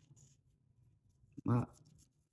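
Faint scratching of a measuring spoon digging at onion powder that has caked hard. A woman says 'my' near the end.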